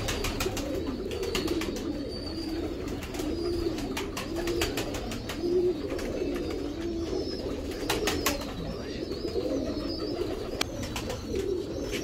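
Domestic pigeons cooing repeatedly, several calls overlapping, with a few sharp clicks scattered through.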